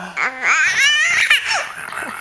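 Young infant girl laughing out loud in a run of short, high-pitched squealing laughs, with a wavering squeal in the middle, tailing off near the end. She is laughing at face-to-face play without being tickled, in one of her first days of laughing.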